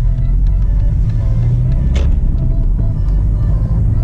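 Car cabin noise while driving through town: a steady low engine and road rumble, with music from the car radio playing underneath.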